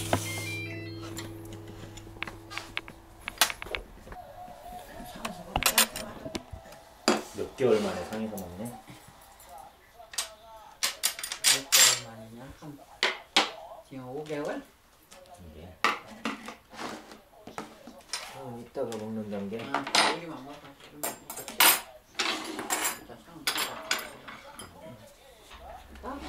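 Dishes, a pot with its lid, and cutlery clinking and knocking in irregular bursts as a meal is laid out on a table. A low hum fades out over the first few seconds.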